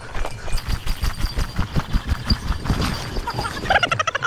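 Running footsteps thudding fast through long grass, several strides a second.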